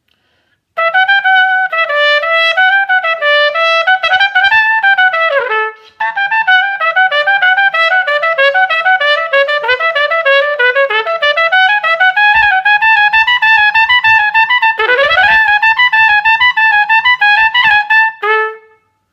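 Unaccompanied piccolo trumpet playing quick runs of bright, high notes. A falling slide leads into a short break about six seconds in, and a fast rising sweep comes near the end.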